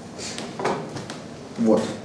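A soft knock with a little rustle, about two-thirds of a second in, against quiet room tone; a man says one short word near the end.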